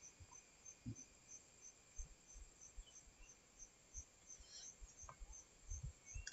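Near silence: faint room tone with a soft high-pitched chirp repeating about three times a second, and a few faint soft clicks.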